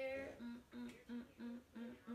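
A woman humming a tune to herself: one held note, then a run of short repeated notes, about three a second.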